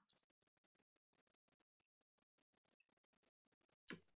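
Near silence, with one brief faint sound just before the end.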